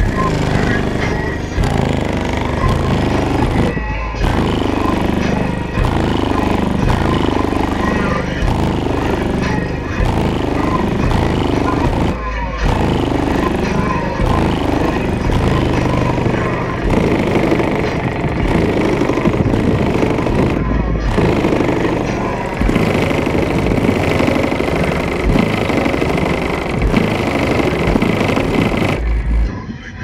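Bass-heavy music with vocals played very loud through a truck's car audio system, which runs two 18-inch SMD subwoofers, heard from outside the truck. The music breaks off briefly about every eight seconds.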